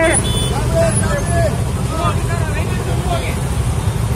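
Steady low rumble of a slow procession of motorcycles, scooters and an autorickshaw, with faint scattered voices over it.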